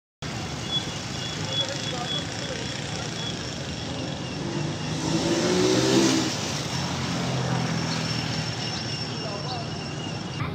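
Road traffic: a motor vehicle's engine passes over a steady traffic hum, its note rising and then falling, loudest about six seconds in.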